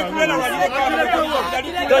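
Several people talking at once, voices overlapping in lively chatter.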